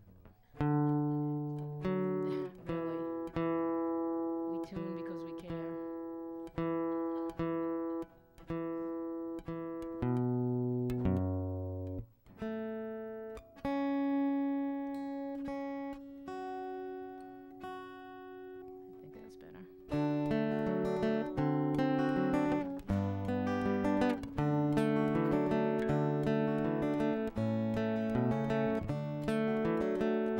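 Acoustic guitar being tuned: single strings plucked again and again and left to ring while the pegs are turned. About two-thirds of the way through it changes to steady strummed chords.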